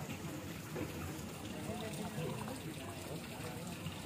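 Indistinct voices of several people talking at a distance over a steady low hum, with no clear words.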